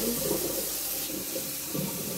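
Kitchen tap running steadily into a stainless steel bowl while hands rinse raw pork chops in the water.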